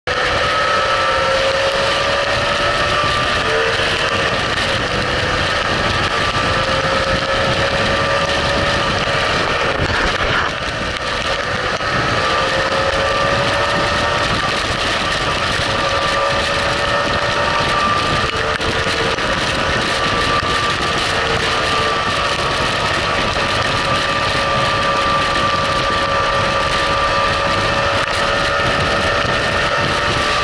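BMW motorcycle engine running at steady highway speed, its note drifting a little with the throttle, under loud steady wind and wet-road noise on the bike-mounted microphone.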